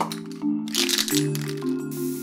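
A spray-paint can hissing loudly for about a second in the middle, over marimba-like mallet-percussion music. Short rattling clicks come just before the hiss.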